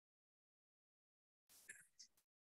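Near silence, with a faint, brief sound near the end.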